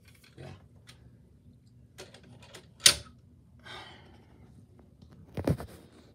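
Scattered light clicks and knocks of a diecast model car being handled and set down on a wooden shelf, with one sharp click about three seconds in and a few knocks near the end.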